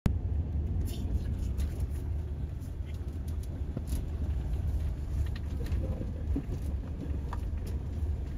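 A car driving along a wet road, heard as a steady low rumble of engine and road noise with scattered light ticks.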